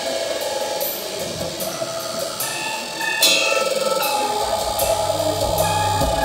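Live band music with no singing: a drum kit keeps time on hi-hat and cymbals over held notes, with a cymbal crash about three seconds in. A low bass line comes in near the end.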